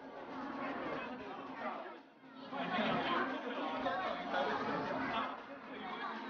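Several people talking at once, an indistinct chatter of visitors' voices, with a short lull about two seconds in.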